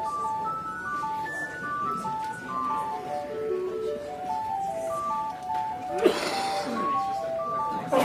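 Church organ playing a single melody line in short, detached notes on a light, bright stop. A brief loud noise cuts in about six seconds in.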